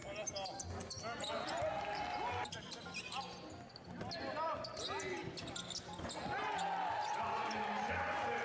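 Live basketball play on a hardwood court: the ball bouncing, sneakers squeaking in short chirps as players cut and stop, and players' voices calling out.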